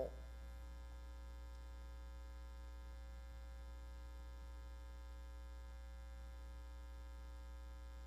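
Steady electrical mains hum, low and unchanging, with faint steady higher tones above it.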